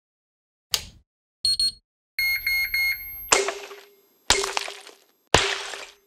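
Electronic sound effects for an animated logo: a short click, a quick double beep, then a run of three lower beeps, followed by three sharp pulses about a second apart, each trailing off with a low hum.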